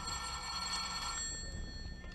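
Telephone bell ringing, one steady ring of about two seconds: a radio-drama sound effect of an incoming call.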